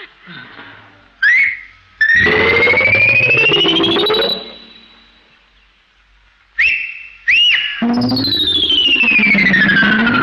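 Comic film soundtrack: whistles and sliding sound-effect tones. A short rising whistle, then a long rising electronic-sounding glide over a wavering lower tone, then two quick whistles, then a long glide falling in pitch. The whistles are the call that summons the car.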